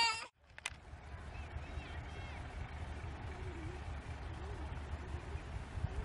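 Steady low rumble of wind on the microphone outdoors, with a few faint, distant wavering calls. A loud high-pitched call is cut off abruptly at the very start.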